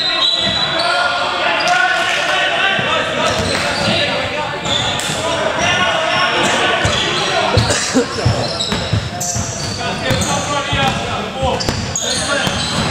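A basketball bouncing on a hardwood gym floor, a few scattered bounces, with players' voices calling out, all echoing in a large hall.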